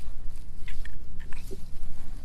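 Gusty low rumble of wind on the microphone, with a few light clicks and rustles as a cat brushes along a metal railing in dry grass.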